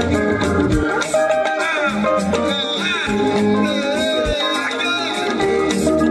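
Live band playing upbeat Ghanaian dance music, with hand drums, a drum kit and keyboard under a lead voice that sings gliding lines.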